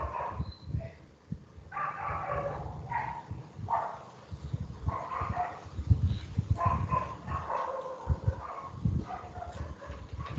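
A dog barking in short bouts, about one a second, picked up over a participant's open microphone in a video call, with low knocks underneath.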